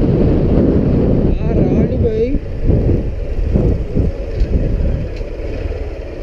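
Wind buffeting the microphone of a camera on a moving motorcycle, with the bike running underneath it. A voice is heard briefly about two seconds in.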